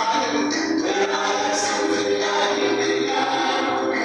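A choir of singers performing live, with several long held notes in the middle.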